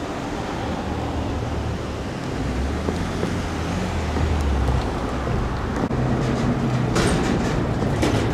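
Low, steady rumble of a heavy diesel vehicle's engine, growing louder over the second half. A burst of sharp crackles comes about seven seconds in.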